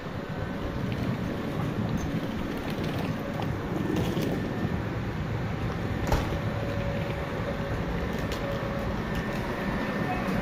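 Ichibata Electric Railway electric train (car 2113) pulling into the station and drawing up alongside the platform: a low rolling rumble that grows slowly louder, with a few sharp clacks of the wheels and a faint steady whine in the second half.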